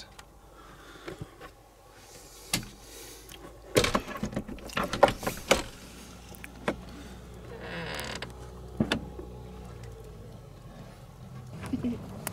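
Clicks, knocks and creaks of handling and movement, with a cluster of loud knocks about four to six seconds in and a short rustle around eight seconds.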